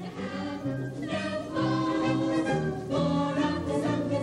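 Background music: a group of voices singing a song together, with accompaniment underneath.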